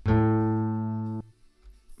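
Acoustic guitar sample played in Ableton Simpler with its length cut to about 7% and looping on, so the note sounds as a steady, buzzy sustained tone at one pitch. It sounds loud at first, fades only a little, and cuts off abruptly just over a second in.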